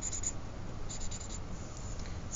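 Highlighter marker tip dabbing on paper, in two short clusters of strokes: one at the start and another about a second in.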